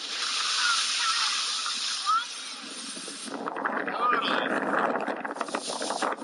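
Skis sliding and scraping over packed snow, with wind rushing on the microphone of a camera carried by a moving skier: a steady hiss for about the first three seconds, then rougher scraping. Faint voices come through now and then.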